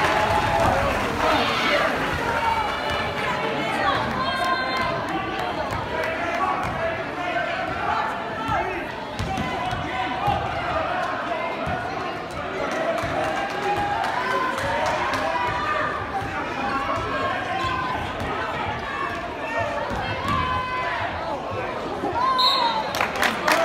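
Basketball being dribbled and bouncing on a hardwood gym floor under steady crowd chatter in a school gymnasium, with a burst of cheering settling down at the start.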